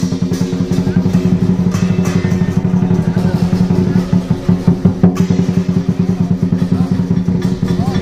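Lion dance percussion: a drum beaten in a fast, even run of strokes, with cymbals and a steady low ringing tone under it.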